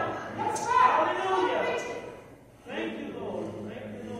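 Speech: a man talking, at a lower level than the sermon around it, with a short pause about two and a half seconds in.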